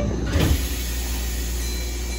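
Kyoto subway 20-series train doors sliding shut, with a short thump about half a second in, followed by the steady low hum of the train standing at the platform.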